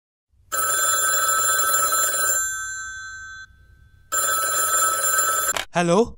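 Telephone ringing twice, the first ring trailing off and the second cut off suddenly as the call is answered.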